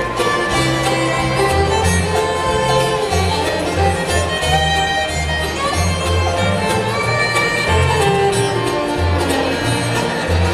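Live bluegrass band playing an instrumental passage: a fiddle takes the lead over acoustic guitar, mandolin and upright bass, which keeps a steady walking beat of low notes.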